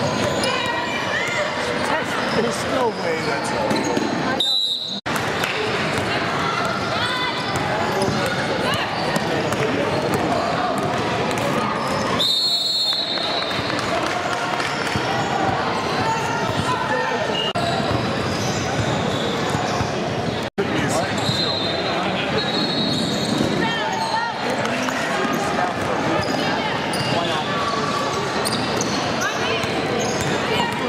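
Basketball being dribbled on a hardwood gym floor during play, with players and spectators calling out and talking over it.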